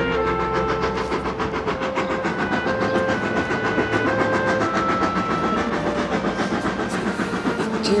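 Steam locomotive approaching with a fast, even chuffing rhythm, under an orchestral film score playing a slow melody of held notes.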